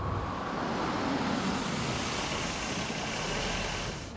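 Road traffic noise: a steady rush of a vehicle driving on a city street, swelling about a second in and dropping off sharply near the end.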